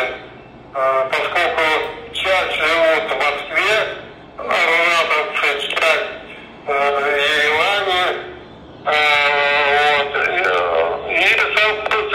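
Speech: a man talking in phrases of a second or two, separated by short pauses.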